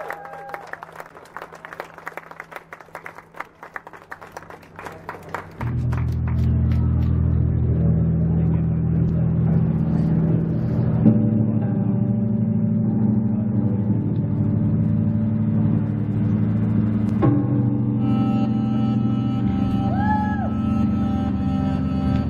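A few scattered claps over a quiet hum, then about five seconds in a loud, steady low bass and synthesizer drone starts a song. The drone shifts pattern about halfway through, and higher electronic tones join after a sharp hit near the end.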